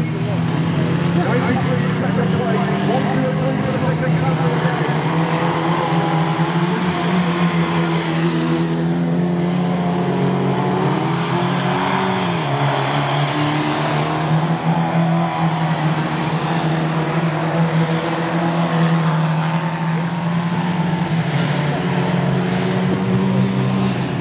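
Modstox stock cars racing around a dirt oval over a steady engine drone that dips briefly about halfway through.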